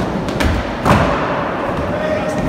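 Skateboard landing on a concrete floor: a couple of light clacks, then a heavier thud just under a second in, with the wheels rolling.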